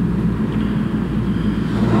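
A steady low hum with a faint background hiss, the room and recording noise of a lecture hall, with no speech.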